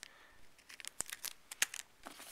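Clear plastic packaging crinkling as it is handled: a handful of short, sharp crackles and clicks in the middle of a quiet moment.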